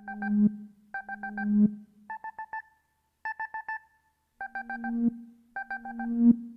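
Synthesized electronic beeps in quick runs of about four, a run roughly every second, switching between two close pitches, with a low synth tone swelling beneath some runs: the electronic intro of a rap track, before the beat and vocals come in.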